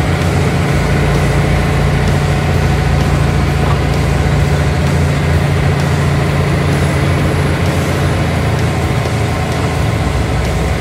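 Kenworth truck's diesel engine running steadily as it pulls a B-double loaded with about 40 tonnes of woodchips, with steady road noise.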